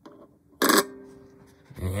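A 24K gold guitar pick set down on the plate of a precious metal verifier: a faint tap, then a single sharp clack about half a second in with a short ringing tail that fades within a second.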